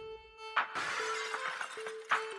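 Shattering-glass sound effect from a logo animation, starting suddenly about half a second in and lasting about a second, over a steady electronic tone.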